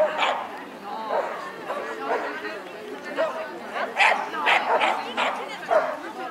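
A dog barking in a run of short, sharp barks, thickest between about four and six seconds in. People's voices can be heard underneath.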